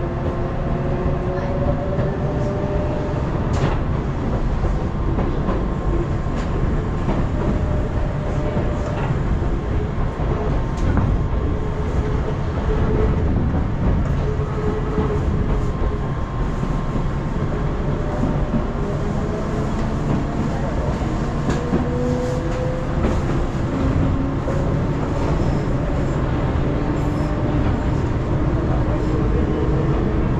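Electric train running, heard from on board: a steady rumble of wheels on the rails, with a faint motor whine that slowly rises in pitch near the start and again in the second half as the train picks up speed.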